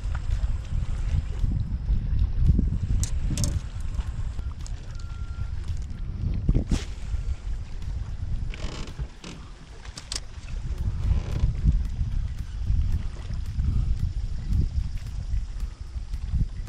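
Wind rumbling on the microphone and water lapping against a small fishing boat's hull, with a few sharp clicks scattered through.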